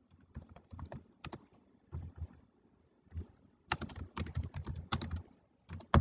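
Typing on a computer keyboard in irregular bursts of keystrokes, with a quick run of keys in the middle and the sharpest keystroke near the end.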